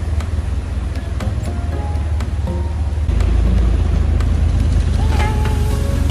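Vehicle rumbling along at low speed through deep floodwater, with background music over it. The rumble gets stronger about three seconds in.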